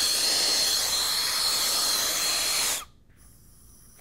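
Brazing torch with a Harris Inferno tip, its flame hissing steadily. The hiss cuts off abruptly about three-quarters of the way through.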